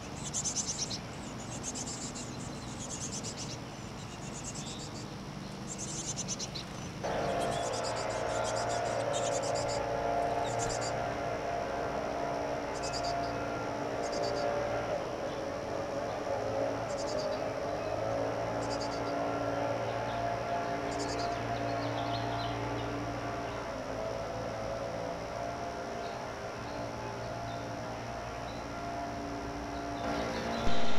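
Chickadee nestlings giving high, thin begging peeps, many in quick succession while a parent is at the nest hole, then only now and then. About a quarter of the way in, a steady low hum joins them.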